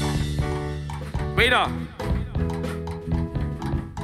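Live band's keyboard holding sustained chords that change about once a second, with light percussion ticks, under a man's voice calling out briefly about a second and a half in.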